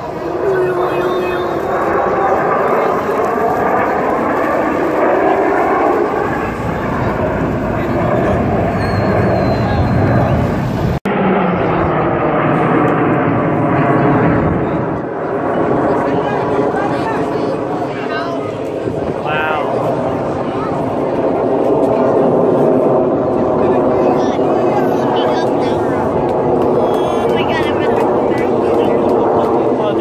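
Jet noise from a four-jet military formation flying overhead, a steady sound that swells and eases, mixed with crowd voices throughout. The sound drops out for an instant about eleven seconds in.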